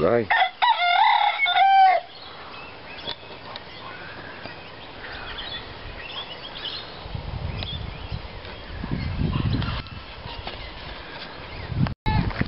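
A rooster crows once, loud, in the first two seconds, ending on a held note. After that there are only faint background sounds, with a low rumble from about seven to ten seconds in.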